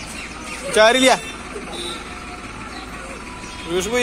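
A child's voice letting out two short wordless cries, each a wavering wail about half a second long that rises and falls in pitch. The first, about a second in, is the louder; the second comes near the end.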